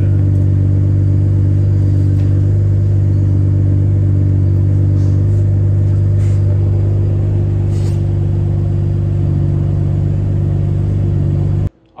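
Toyota A90 Supra's engine idling steadily and loudly through its titanium single-exit exhaust, then cutting off suddenly near the end.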